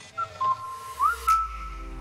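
A short whistled tune of a few notes, sliding up to a held note about a second in. Then a steady music chord with bass sets in under it.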